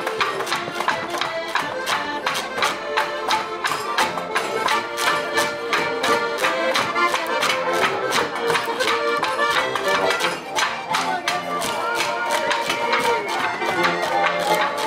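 Button accordion playing a lively Alpine folk tune live, with a fast steady percussive beat.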